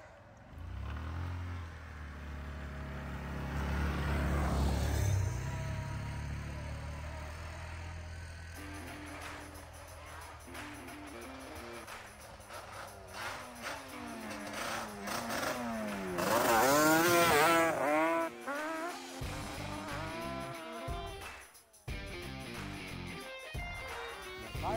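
Yamaha Banshee's twin-cylinder two-stroke quad engine running as it rides past, loudest about four to five seconds in, then fading away. From about eight seconds in, background music takes over.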